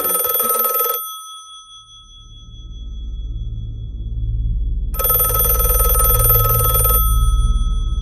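A bell like a telephone's ringing in two rings of about two seconds each, with a pause of about four seconds between them. Under it, a low droning hum swells in and grows louder.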